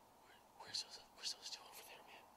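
A few faint whispered words, a short run of breathy hisses about a second long starting just past halfway through.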